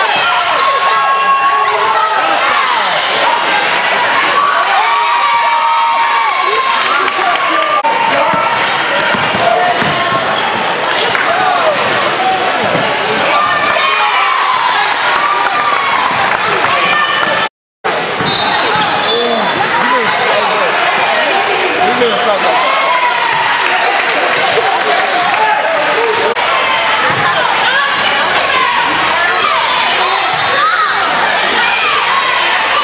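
Basketball game sounds in a gym: a ball bouncing on the hardwood floor under a steady mix of spectators' and players' voices. The sound drops out for a split second at a cut about eighteen seconds in.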